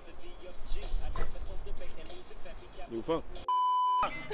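A steady electronic bleep tone, about half a second long near the end, edited in over the track so that all other sound drops out, as a censor bleep does. Before it, faint voices and low wind rumble on the microphone.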